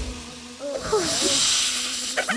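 Cartoon sound effects: a steady hiss, with a few short gliding vocal sounds from the animated ants about half a second to a second in.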